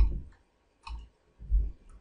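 A computer mouse clicks about a second in, followed by a soft low thump.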